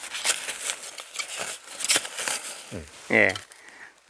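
Soil and black plastic mulch film crackling and rustling as a young garlic plant is pulled up by hand. A man's short word a little after three seconds is the loudest sound.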